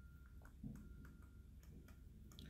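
Near silence with a few faint ticks of a stylus tapping on a tablet screen during handwriting, over a steady low hum.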